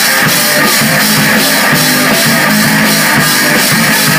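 Live rock band playing an instrumental passage on electric guitars and bass through amplifiers over a drum kit, with a steady cymbal beat of about three strikes a second.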